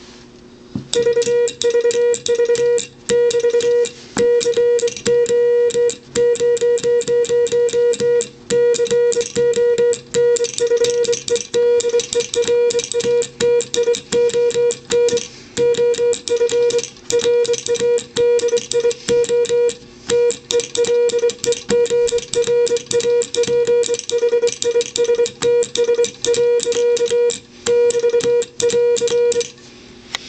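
Morse code sent on a semi-automatic 'bug' key: a steady beeping tone keyed on and off in quick dots and dashes, starting about a second in, with brief pauses between groups. The key's contacts click rapidly underneath as the vibrating pendulum makes the strings of dots.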